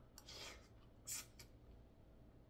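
Faint slurping of a forkful of noodles: a soft hiss, then a short sharper slurp about a second in.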